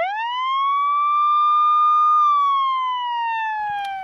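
A single siren wail used as a sound effect: the pitch sweeps up sharply at once, holds for about two seconds, then slowly slides down and fades near the end.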